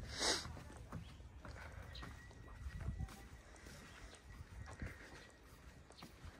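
Soft footsteps on a wooden deck, scattered irregular knocks, with a brief loud hiss just after the start.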